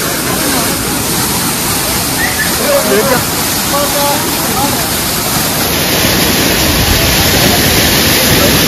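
Waterfall pouring onto rock and a shallow pool: a loud, steady rush of falling water, a little louder near the end.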